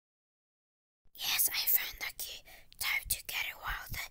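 Dead silence for about the first second, then a person whispering in short, quick phrases.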